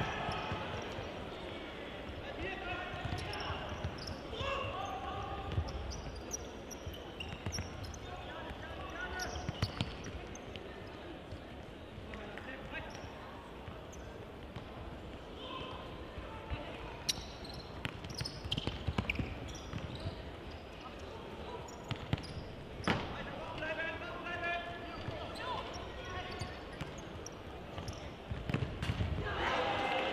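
Ball kicked and bouncing on the hard floor of an indoor football hall, a scatter of sharp knocks that echo in the large hall, over the murmur of the crowd and occasional shouts from players and spectators.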